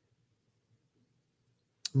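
Near silence: room tone, broken near the end by one brief click just before a man's voice starts again.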